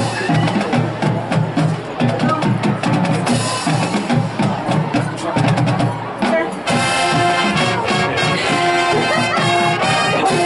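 High school marching band playing: percussion with many quick, sharp strikes over low drum pulses for about the first two-thirds, then the brass section comes in with sustained chords.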